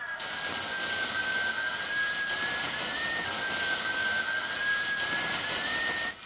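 Loud even hiss with a steady high whine on an old VHS tape's soundtrack during a blank stretch of tape. The whine wavers slightly in pitch, and both stop abruptly at the end.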